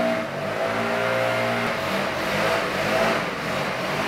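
A motor engine running with a steady drone that shifts pitch around the middle: outdoor machinery noise from the neighbourhood lawn mowing and construction.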